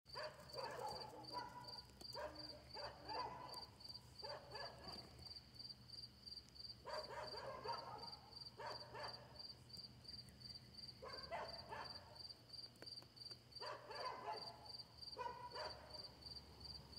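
A dog barking faintly in short bouts of a few barks every couple of seconds, over a cricket chirping steadily at about four chirps a second and a low steady hum.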